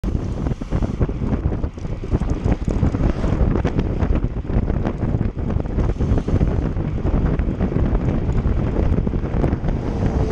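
Wind buffeting the microphone of a camera riding on a road bike at speed: a loud, steady rush with rapid flutter and crackle, cutting in abruptly at the start.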